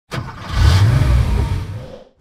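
Car engine revving as a logo sound effect: it starts suddenly, swells to a loud peak with a deep rumble and a rushing hiss, and fades out within two seconds.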